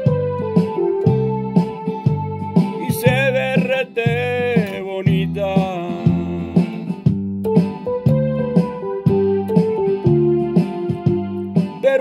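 Instrumental passage of a song: a steady, pulsing bass beat under a wavering melodic lead, with no singing.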